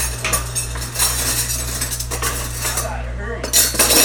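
Silverware clattering and clinking as it is handled and washed in a dish sink, with the loudest burst of clatter near the end. A steady low hum runs underneath.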